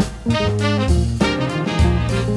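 Jazz band playing live: trumpet and saxophones sound a line together over low bass notes and regular sharp beats.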